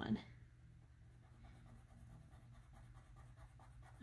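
Faint, rapid scratching of a blue pen on paper as small boxes on a printed tracker sheet are coloured in, over a low steady hum.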